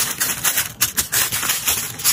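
Thin tissue paper crinkling and rustling as hands fold it over inside a cardboard box, a dense run of small crackles.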